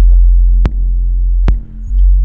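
Electronic kick drum and sub bass playing together in Ableton Live: a loud, steady low bass note with kick hits about 0.7 s and 1.5 s in. Both sounds are heavy around 44 Hz, so the low end clashes and starts "farting".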